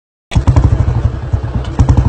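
Motorcycle engine running, with a rapid, even beat of exhaust pulses that cuts in abruptly just after the start.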